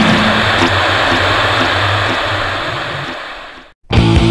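Punk rock band's last chord ringing out: distorted electric guitars and crashing cymbals held over a low bass note, fading away to a moment of silence. The next song starts with a sudden full-band hit right at the end.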